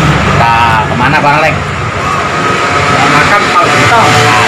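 A vehicle engine running steadily, with a man's voice briefly over it in the first second and a half.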